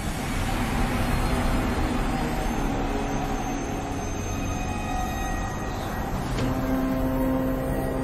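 Soundtrack with a steady rushing noise that comes in suddenly at the start, under held background-music notes.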